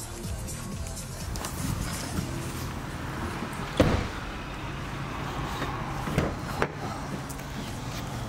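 Background music, with an Audi Q5's door shutting in one sharp thump just before halfway. Near the end come two quick clicks of the door handle and latch as a door is opened.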